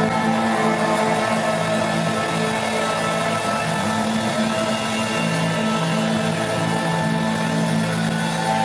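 Live rock band playing, with guitars and keyboards holding long sustained notes that change pitch a couple of times.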